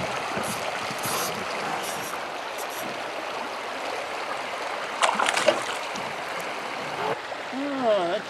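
River water rushing steadily over a rocky riffle. About five seconds in there is a brief burst of splashing, a small hooked panfish thrashing at the surface as it is reeled in.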